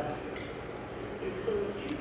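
Cutlery clinking lightly against plates during a meal, two sharp clinks, one shortly after the start and one near the end, over faint background voices.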